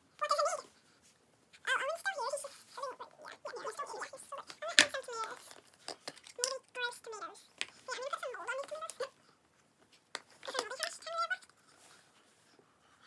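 A child's high-pitched voice making wordless vocal sounds in short phrases, with a sharp click a little under five seconds in.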